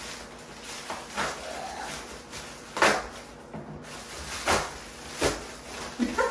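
Plastic poly mailer bag being handled and pulled open by hand: a few short, sharp rustles and rips, the loudest about three seconds in.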